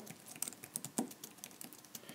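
Faint typing on a keyboard: light, irregular key clicks, one a little louder about halfway through.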